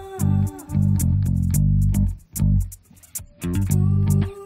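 Live trip-hop band music led by an electric bass guitar playing a line of low notes over a beat of sharp high ticks. A held tone fades out just after the start, the music thins out briefly around the middle, and a short rising run of notes comes near the end.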